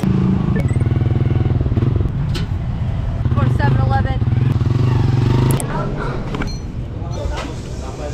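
Small motorcycle engine of a Philippine tricycle running steadily with a fast even beat, heard from inside the passenger sidecar. It cuts off about five and a half seconds in.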